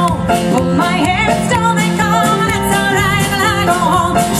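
Live band playing a country-folk song on amplified guitars and keyboard, with a voice singing over a steady bass line.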